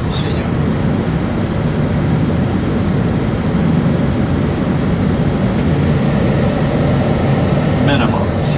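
Steady cockpit noise of an ATR 72-600 turboprop on final approach: its Pratt & Whitney PW127M engines and propellers with the airflow, a deep even rumble with a thin high whine held over it.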